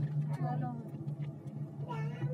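Steady low hum of a moving cable car heard from inside the cabin, with brief talk over it.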